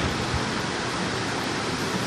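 Steady, even background hiss of room noise, the kind an air conditioner or fan makes, with no other distinct event.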